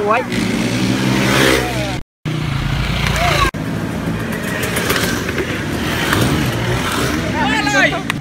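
A vehicle engine running close by as traffic passes, with people shouting and whooping; the sound cuts out for a moment about two seconds in.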